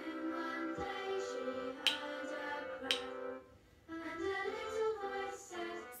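A recorded children's song with singing plays, with a brief drop out about three and a half seconds in. Two sharp taps sound about a second apart, around two and three seconds in.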